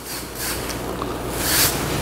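Wave brush bristles rubbing across short, coarse hair in brushing strokes around the crown: a continuous scratchy hiss that swells about one and a half seconds in.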